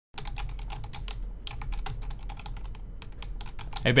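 Typing on a computer keyboard: a fast, irregular run of key clicks.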